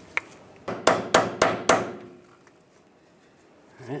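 Five quick, sharp metallic taps about a quarter second apart, each with a brief ring: an 8 mm socket being tapped to seat a new seal into the power steering line port on the steering rack.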